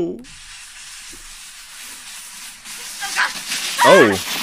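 Steady hiss of a plastic sled sliding on a snowy trail, with a voice calling out near the end.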